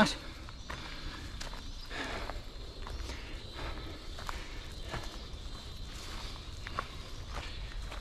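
Footsteps on a grass and dirt trail: soft, irregular steps about every half second to a second, over a steady low rumble.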